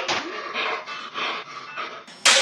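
Rapid, heavy breathing, a few breaths a second, growing fainter toward the end.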